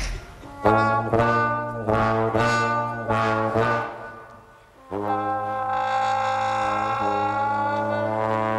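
Two slide trombones playing together: a string of short separate notes for about three seconds, a brief drop in sound, then a long held chord.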